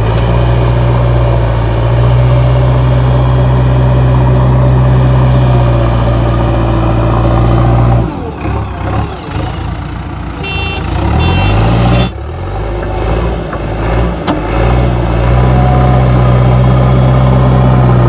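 JCB 3DX Xtra backhoe loader's four-cylinder diesel engine working hard as the front loader bucket pushes into a pile of soil, a steady heavy drone. About eight seconds in the engine note drops and wavers for a few seconds, with a brief high-pitched beeping, before the heavy steady note comes back.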